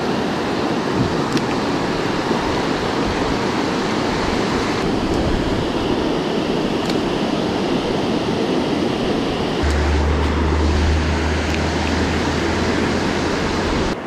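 Steady rush of creek water running over shallow riffles below a dam spillway. From about ten seconds in, a steady low rumble joins it.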